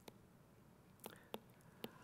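Near silence, broken by three faint, short clicks in the second half.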